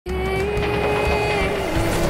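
A train whistle blowing one long steady note over the low rumble of a moving train. The note drops in pitch near the end as the train passes.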